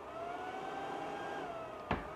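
Cooling fan of Apple's heated display removal machine running with a steady whine. Its pitch creeps up slightly and then drops about one and a half seconds in as the fan changes speed. A single sharp click comes near the end.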